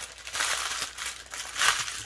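Clear plastic wrapping around a strip of diamond-painting drill packets crinkling in uneven bursts as it is pulled open and handled.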